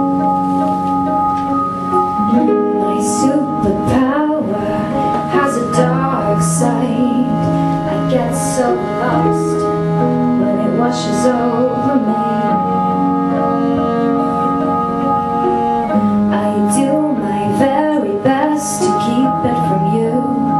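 Live band music: sustained organ-like keyboard chords, with a woman singing over them in the first part and again near the end.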